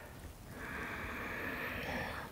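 A woman taking a slow, deep, audible breath. It begins about half a second in and lasts about a second and a half.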